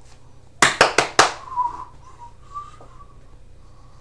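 Four quick, sharp taps close to the microphone, then a short wavering whistle in two brief stretches.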